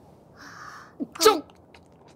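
A short breathy intake, then a brief voiced gasp a little past a second in: a character's breath and small vocal sound.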